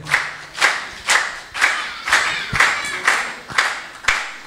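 An audience clapping together in a steady rhythm of about two claps a second.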